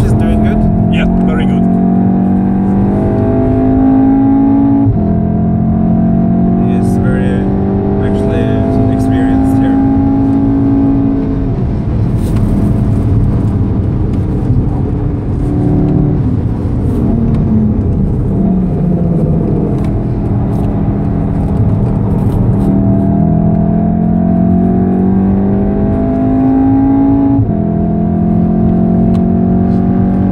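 VW Golf VII R's turbocharged 2.0-litre four-cylinder engine heard from inside the cabin, pulling hard at full throttle. Its note climbs steadily in pitch, then drops sharply at gear changes about 5 and 11 seconds in and again near the end. Steady tyre and road noise runs underneath.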